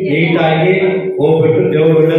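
A man chanting through a microphone and loudspeaker in long, held devotional syllables, with a brief break just past a second in.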